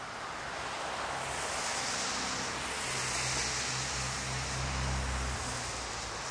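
Outdoor street noise: a steady hiss with a low vehicle engine hum that comes in about a second in and drops away a little after five seconds.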